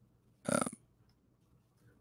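A single short, low 'um' from a man's voice, a hesitation sound lasting about a third of a second; the rest is near silence.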